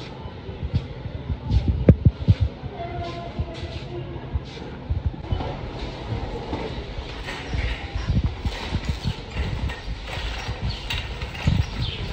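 Metal shopping cart being pushed across a hard floor, its wheels and basket rattling and knocking irregularly, with a few sharper knocks about two seconds in.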